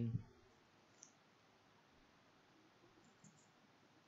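Faint computer keyboard keystrokes over near silence: a soft click about a second in and two more close together near the end.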